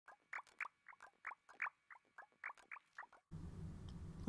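A quick, irregular string of short, high chirps, each dropping in pitch, about four a second. They stop a little after three seconds in, and a low, steady hum with hiss takes over.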